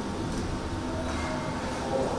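A steady low hum under faint room noise in a hall, with no clear knocks or voices.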